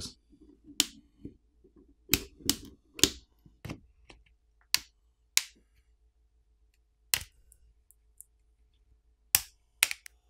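Plastic catches of a Motorola Moto G82 5G's back housing popping loose one after another as a plastic pry pick runs along the edge of the frame: about ten sharp, irregularly spaced clicks, with faint scraping between the first few.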